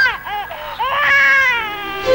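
A woman crying and wailing: a few short broken sobs, then one long high cry that falls in pitch.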